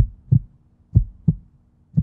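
Heartbeat sound effect: low lub-dub double thumps, about one beat a second, two full beats and the start of a third, over silence.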